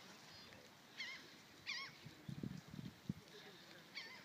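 Two short, wavering bird calls about a second and a second and a half in, with low gusts of wind rumbling on the microphone just after the middle.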